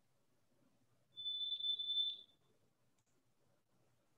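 A single high-pitched electronic beep, one steady tone lasting a little over a second, starting about a second in.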